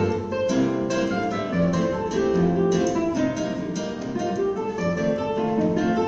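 Two nylon-string classical guitars playing a choro as a duet: a quick stream of plucked melody notes over a moving bass line.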